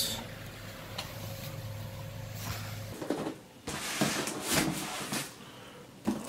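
A low steady hum for the first half, which stops suddenly about three seconds in. Then a cardboard box is handled on a desk, with a quick run of knocks and cardboard rubbing.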